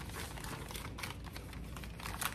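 Packing paper crinkling and rustling as hands fold and press it around a candle jar, in a quick, irregular run of small crackles.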